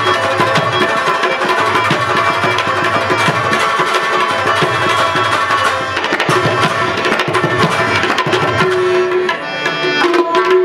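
Pashto folk instrumental music: a rabab plucked and strummed over harmonium chords, with hand drums keeping a dense, driving rhythm.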